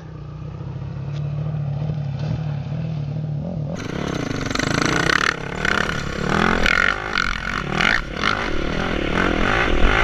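The 2008 Honda CRF450R's single-cylinder four-stroke engine heard from a distance, running at a steady low pitch as the bike comes down a steep hill. About four seconds in the sound changes abruptly to a close on-board recording of a dirt bike riding over dirt, the engine's pitch rising and falling amid wind and the rattle of the bike.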